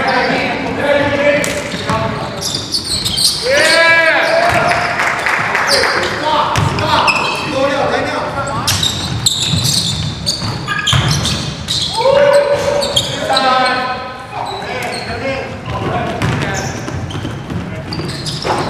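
Basketball game sounds in a large gym: a basketball bouncing on the hardwood court, with short sharp impacts throughout and players' voices calling out a couple of times.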